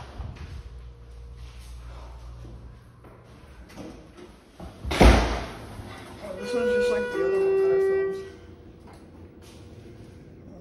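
A heavy door slams shut about halfway through. Then a Schindler HT hydraulic elevator's chime sounds two steady tones, the second lower than the first, each held about a second.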